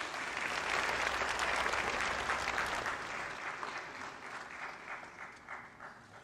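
Audience applauding in a hall: a crowd's clapping that builds in the first second, then thins out and fades to a few scattered claps near the end.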